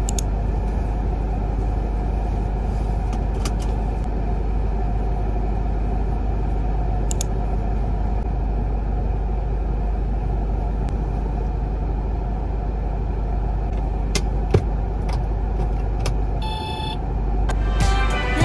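Steady low rumble of a stationary car with its engine idling, heard from inside the cabin, with a few small clicks and a sharper knock about fourteen and a half seconds in.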